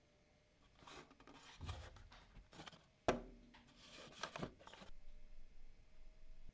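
Faint handling noise as an AC servo drive is turned over in the hands: light rubbing and rustling, with one sharp knock about three seconds in.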